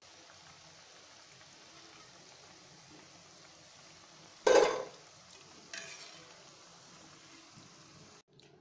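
Faint, steady sizzle of murukku deep-frying in hot oil in a steel pan. About four and a half seconds in there is one loud, brief metallic clatter of the steel slotted spoon against the pan, and a fainter one about a second later.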